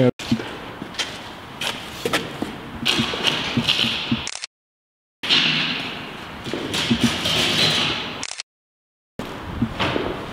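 Footsteps scuffing and tapping on a dirty concrete floor, with scattered sharp knocks. The sound cuts out completely twice, for under a second each, around the middle and near the end.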